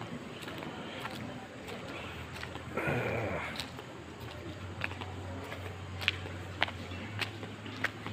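Footsteps on a concrete floor over a steady low hum, with a short breathy sound lasting about half a second about three seconds in.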